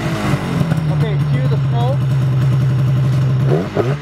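Turbocharged Polaris Pro-RMK 800 snowmobile's two-stroke engine running at a steady pitch, then revving up near the end.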